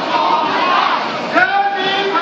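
A crowd of protesters shouting and yelling together, with many voices overlapping; a new loud shout rises about a second and a half in.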